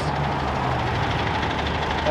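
Double-decker bus engine idling close by, a steady low drone, with road traffic in the background.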